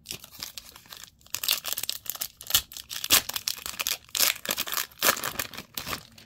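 A foil-lined plastic booster pack wrapper being torn open and crinkled, with irregular crackling rips and crinkles in quick clusters, loudest in the middle.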